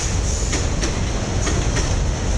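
Freight train of autorack cars rolling past close by: a steady, loud rumble of steel wheels on rail, broken by irregular clicks as the wheels cross rail joints.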